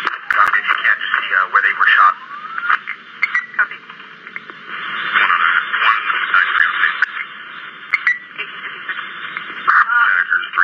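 Police dispatch radio traffic: unintelligible voices through a thin, narrow-band radio channel, with a sharp click just after the start.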